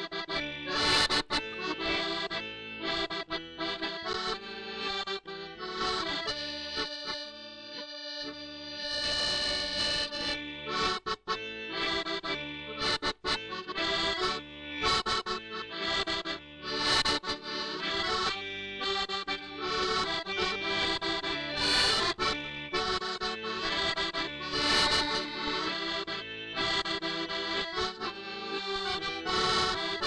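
Solo accordion playing a tune with full chords as the bellows are worked, with brief breaks in the sound about 11 and 13 seconds in.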